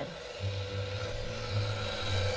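A low, steady musical drone of film underscore comes in about half a second in and holds, over a faint steady hum.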